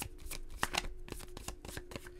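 A deck of tarot cards being shuffled by hand: quick, irregular flicking clicks as the cards slide and tap against each other.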